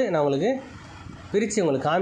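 A man's voice speaking in two drawn-out stretches with a short pause between them.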